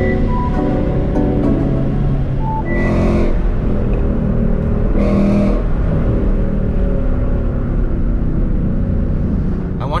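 Ford Mustang's engine and road noise heard from inside the cabin as it cruises, with background music in the first second or so. Two brief louder rushes come about three and five seconds in.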